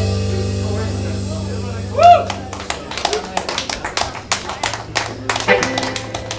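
The band's final chord rings out and fades. About two seconds in, a loud whoop from the audience breaks out, followed by irregular applause and clapping.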